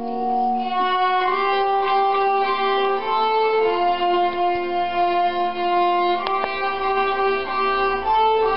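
Two violins, one played by a young child, playing a slow tune together in long held notes.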